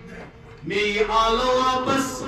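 A man chanting in long held, slowly bending notes through a microphone, starting after a short pause about half a second in.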